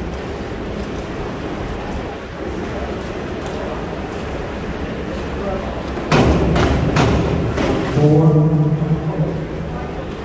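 Springboard dive: a thud from the board at takeoff about six seconds in, then the splash of the diver's entry, over the steady background noise of a pool hall. A voice calls out just after the splash.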